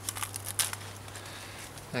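Small scissors snipping the leaf blades off a cardoon stalk: a few short, crisp snips, most of them in the first second.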